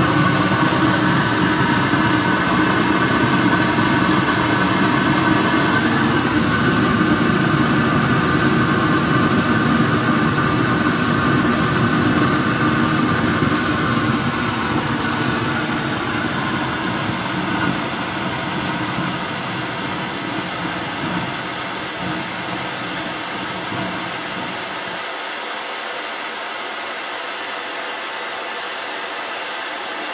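Waste-oil burner under a converted gas water heater, blown by a hair dryer, dying out after its oil supply is shut off: the low flame rumble fades over about twenty-five seconds, leaving the hair dryer's steady whir.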